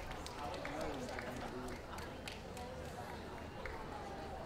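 Faint voices of people talking in the background over a low steady hum, with scattered light clicks.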